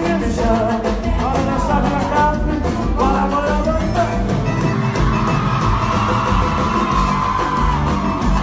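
Live sertanejo band played loud through a concert PA, with singing over it. About five seconds in the voice holds one long note.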